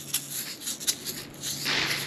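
Small plastic toys clicking and clattering against each other as a hand digs through a plastic trash bag full of them, with a burst of rustling near the end.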